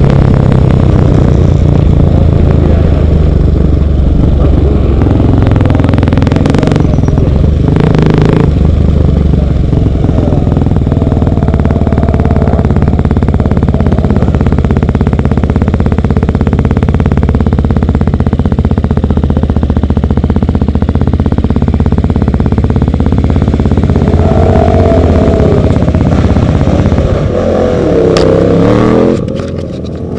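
KTM 450 supermoto's single-cylinder four-stroke engine running at low speed under the rider, heard through a helmet camera. Its revs rise and fall in the last few seconds, and it gets quieter just before the end.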